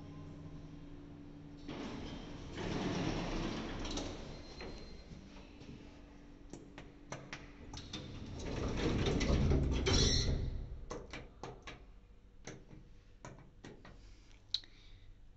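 Schindler lift's sliding doors moving, heard as two rushing swells of noise a few seconds apart, the second louder, with a string of sharp clicks through the second half. A steady low hum is heard at the start and stops about two seconds in.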